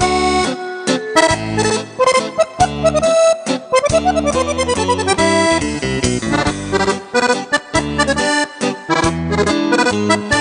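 Piano accordion playing a lively dance tune: a quick right-hand melody over a steady, regularly pulsing left-hand bass-and-chord accompaniment.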